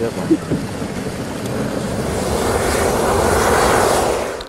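Hot-air balloon propane burner roaring, growing steadily louder through most of the stretch.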